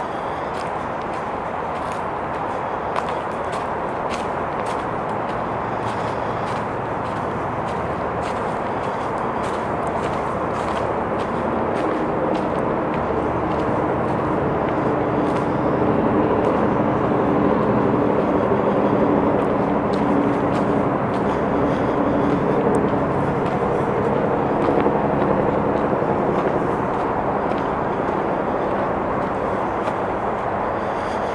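Steady rumble of distant traffic, with a low drone of several steady tones joining in from about halfway through and fading near the end. Faint footsteps crunch on the gravel trail.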